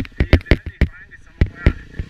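Enduro motorcycle's engine popping irregularly, about nine sharp pops spaced unevenly over two seconds.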